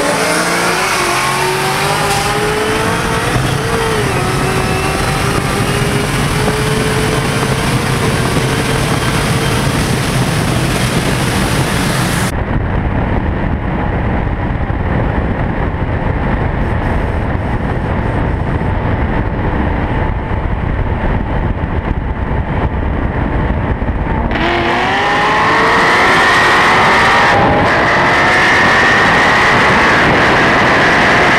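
V8 race cars, a C6 Corvette Z06 and a Cadillac CTS-V, at full throttle in a roll race, their engine notes climbing in pitch as they pull through the gears. About twelve seconds in the sound turns to a deeper, muffled rumble. Near the end, rising engine whines climb again.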